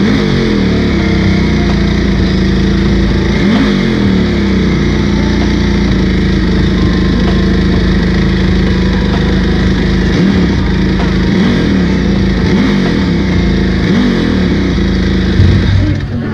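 Britten race motorcycle's V-twin engine running loudly at a fast idle, its throttle blipped several times so the revs briefly rise and fall.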